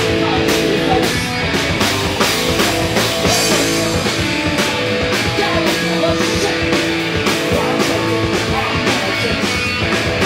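Live hardcore punk band playing loud and steady: electric guitar, bass guitar and drum kit with regular drum and cymbal hits.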